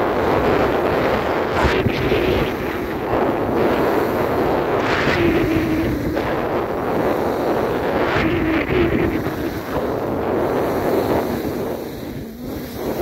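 Wind buffeting the microphone of a downhill skier, with skis hissing and scraping over groomed snow in swells every second or two as the turns go.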